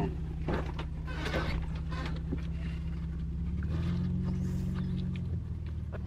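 Car engine running, heard from inside the cabin as a steady low hum; its pitch rises for about a second and a half a little past the middle, then drops back.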